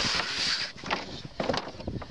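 A bull moving its head about in a wooden cattle chute while being handled: scattered knocks and scuffling, with a breathy hiss near the start.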